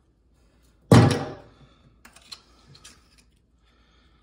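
A single loud thunk about a second in, dying away over half a second, then a few faint clicks: a hard object such as an oyster shell or the oyster knife being put down while shucking at a stainless steel sink.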